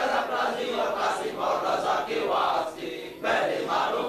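A group of men chanting together in unison, repeating a short phrase of zikr over and over in a steady rhythm, with a brief pause about three seconds in.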